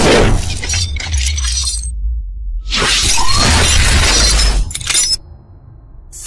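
Cinematic intro sound effects: a deep bass rumble under a series of loud crashing hits with sliding whooshes, the longest from about three to five seconds in, then dying away near the end.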